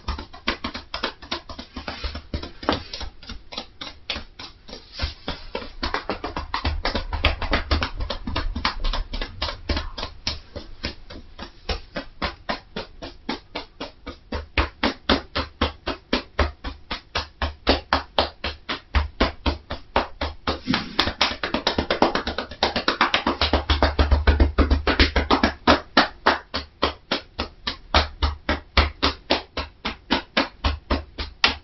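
Rapid, even percussive tapping with the hands on a seated person's head (tapotement massage), about five short taps a second, growing louder for a while about a quarter of the way in and again a little past two-thirds.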